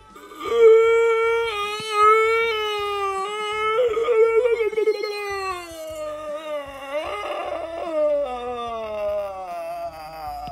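A long, high crying wail from one voice, held on one pitch for about five seconds with a brief waver near the middle, then sliding steadily down in pitch until it breaks off near the end.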